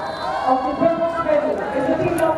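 A voice speaking over a stadium public-address system; the words are not made out.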